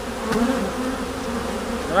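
Honeybees buzzing around an opened hive: a steady hum of many bees in flight.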